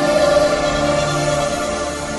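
Music: slow, sustained chords held by choir-like voices.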